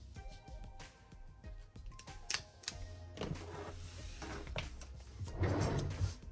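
Soft background music with sharp clicks and rustles of paper and sticker sheets being handled, and a louder rustle of the planner pages near the end.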